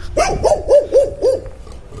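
A dog barking, a quick run of about five high yaps within the first second and a half.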